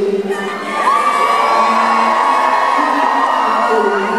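Concert audience singing along loudly with a live band and the singer's amplified voice, many voices together holding one long note from about a second in.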